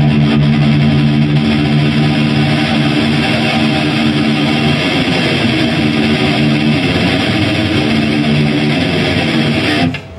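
Distorted electric guitar through a Hughes & Kettner CoreBlade amp, played as one continuous, densely picked riff that stops abruptly just before the end.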